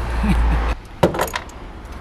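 A low rumble cuts off abruptly under a second in. Then comes a short burst of metallic rattling and clinking from a fuel pump hanger assembly being handled.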